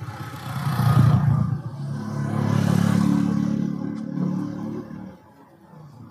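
A motor vehicle's engine running past, swelling and then fading away about five seconds in.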